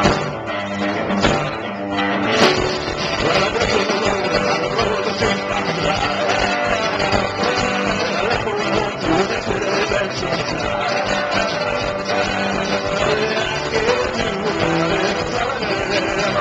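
Live rock band with acoustic and electric guitars, bass and drums playing the opening of a song. A few sharp hits in the first couple of seconds, then the full band plays on steadily.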